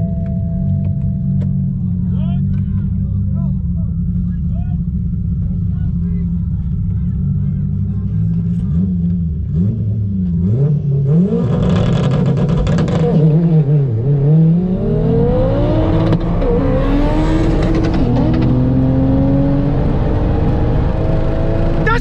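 Toyota A90 Supra's turbocharged engine heard from inside the cabin. It runs steadily for about ten seconds, then dips and climbs sharply in pitch as the car accelerates hard, rising through the gears with a couple of shifts.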